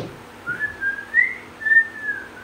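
A person whistling a short tune of a few wavering notes, rising and falling in pitch, beginning about half a second in; a sharp click comes just before it.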